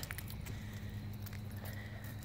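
Light jingling of metal dog-collar tags and leash hardware as the leashed dogs walk, over a steady low hum.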